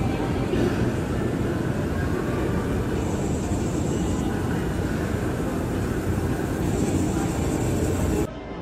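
Escalator running: a loud, steady mechanical rumble of the moving steps and drive, with a faint high whine that comes in twice.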